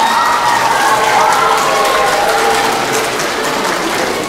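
Applause from a crowd of children and adults, many hands clapping steadily, with a few voices faintly over it.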